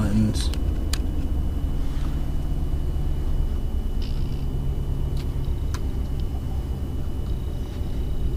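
A 2009 Dodge Ram 1500's 5.7-liter Hemi V8 idling steadily, heard from inside the cab as a low rumble, with a couple of faint clicks.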